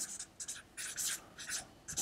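Felt-tip marker writing a word on flip-chart paper: several short strokes of the pen tip across the paper.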